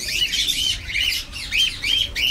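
Cockatiels squawking: a quick string of short, arched, rasping calls, about three a second.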